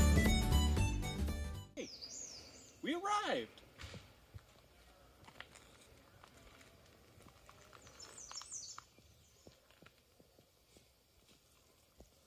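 Acoustic guitar music cuts off about two seconds in. Faint birdsong with short high chirps follows, with one brief voice-like call that rises and falls about three seconds in and more chirping a little after eight seconds.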